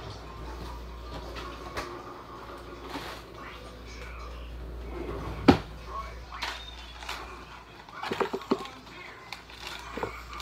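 Kitchen handling noise: scattered clicks and knocks over a low steady hum, the sharpest click about five and a half seconds in and a quick cluster of knocks near the end.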